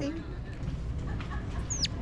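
Capuchin monkey giving a couple of faint chirps, then one sharp, high squeak that drops steeply in pitch near the end.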